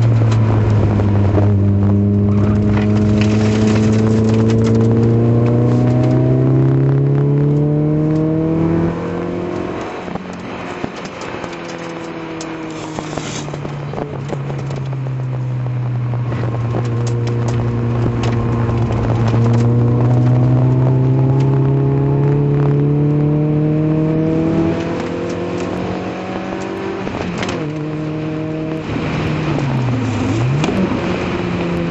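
Citroën Saxo VTS's 1.6-litre four-cylinder engine heard from inside the cabin at track speed. The revs climb slowly through the first third and then fall away. They climb again through the middle and ease off, and near the end there is a quick dip and rise in pitch. Scattered clicks and rattles run under the engine.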